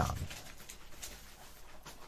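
Faint sounds of a small dog stirring in the background, just woken up.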